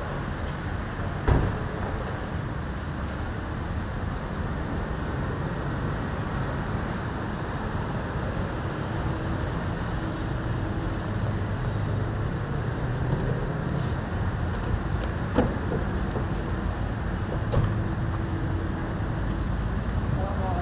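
Low steady rumble of a car engine and road noise as a car pulls up, with a few sharp knocks: one about a second in, two more near the end.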